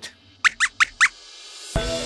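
Four quick, high squeaks from a robot lab-rat puppet's squeaky voice effect, answering the host. Near the end, music with a steady beat and mallet-percussion tones swells in.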